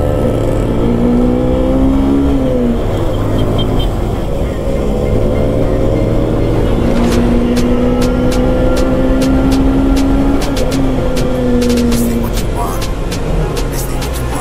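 Motorcycle engine running under way, its pitch climbing and then dropping twice: a short rise in the first few seconds, then a long climb to about ten seconds in that falls away, as the bike accelerates and then shifts or eases off.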